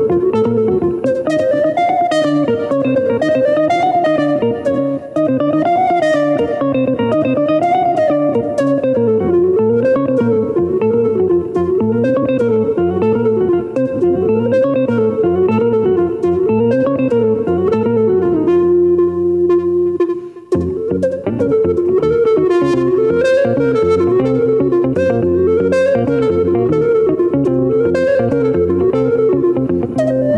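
Live instrumental music from a duo: a semi-hollow electric guitar plays a repeating rising-and-falling figure while a black woodwind plays along. About two-thirds of the way through, one long held note is followed by a brief drop in loudness before the figure resumes.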